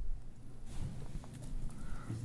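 Footsteps of a person walking across a hard classroom floor, fairly faint, over a steady low room hum.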